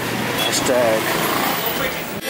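Street noise at night: a vehicle running past on the road, with voices.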